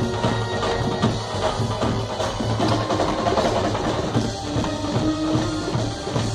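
Live band playing dandiya music led by percussion: rapid dhol, timbale and drum-kit strokes over held low bass notes.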